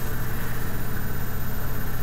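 Steady low hum and hiss of a small running motor, with a fast, even flutter in its level.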